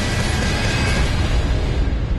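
Loud, dense dramatic trailer music with a heavy low rumble under it, holding steady throughout.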